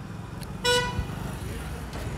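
A vehicle horn gives one short toot about two-thirds of a second in, over a steady low rumble of traffic.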